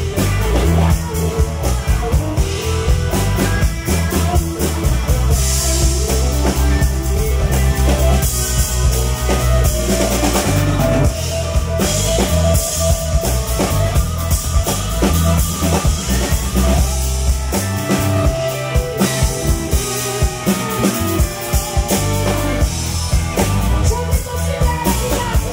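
Live blues and rhythm'n'blues band playing, with the drum kit driving a steady beat under bass and electric guitar.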